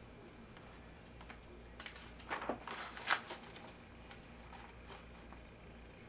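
Pages of a picture book being turned and pressed flat by hand: a few paper rustles and light knocks, the loudest about three seconds in.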